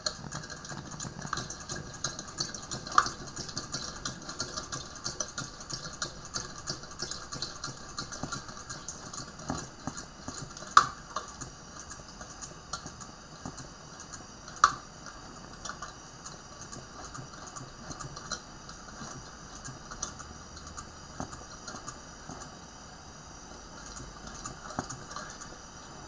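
Coleman 220C gas lantern's hand pump being worked in repeated strokes to pressurize the fuel tank, the plunger and check valve clicking, with a few sharper clicks. A steady hiss runs underneath, and the clicking thins out near the end.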